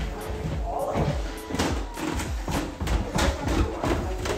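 Quick footsteps going down a wooden staircase, about four or five steps a second, starting about one and a half seconds in. Background music plays throughout.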